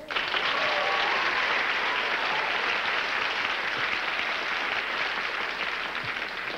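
Studio audience applauding, starting abruptly and holding steady, easing off slightly near the end.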